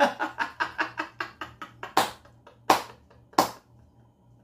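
A man laughing hard: a fast run of laughs that trails off over the first two seconds, followed by three sharp bursts about two-thirds of a second apart.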